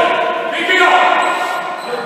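Basketball bouncing on a wooden sports-hall court among the voices of players on court.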